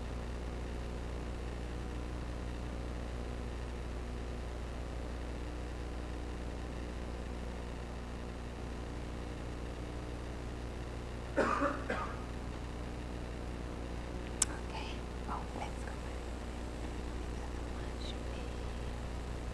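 Steady low electrical hum and room noise of a lecture-hall recording. About eleven seconds in there is a short cough, the loudest sound, and a few seconds later a single sharp click.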